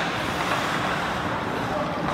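Indoor ice rink ambience during a hockey game: a steady wash of noise from skates on the ice and the arena, with distant voices and one sharp click, like a stick or puck strike, at the very start.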